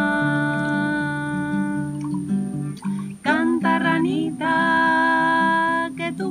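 A woman singing two long held notes over a strummed acoustic guitar, with a short break between the notes about halfway through.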